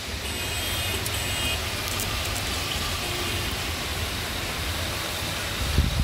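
Heavy rain falling steadily, an even hiss of rain on the road and trees with a low rumble underneath. There is a brief low thump near the end.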